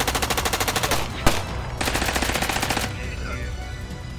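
Submachine-gun fire: a burst of rapid shots, a single louder shot about a second in, then a second rapid burst that stops near the three-second mark, over a low music bed.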